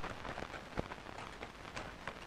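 Faint steady hiss with a few soft ticks: background noise of an old film soundtrack.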